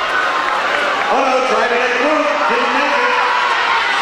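A man talking continuously, mixed with the background noise of the venue.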